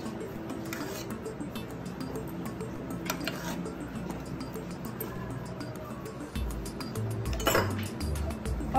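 A steel spoon clinking a few times against a steel bowl while curd is scooped out, over background music. A bass beat comes into the music near the end.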